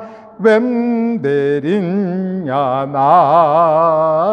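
A man singing a hymn solo with no accompaniment, in long held notes that waver with vibrato and step from one pitch to the next, after a short breath at the start.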